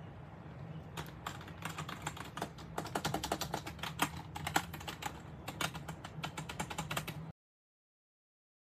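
Fast typing on a desktop gaming keyboard: a rapid run of key clacks starting about a second in, over a steady low hum, cutting off abruptly near the end.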